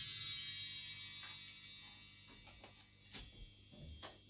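Percussion chimes ringing out after being swept at the end of a song: many high, bell-like tones fading slowly away, with a few faint clicks near the end.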